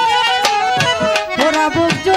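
Live traditional Bengali Baul folk music: a melody instrument playing a line that bends up and down in pitch, over repeated tabla strokes.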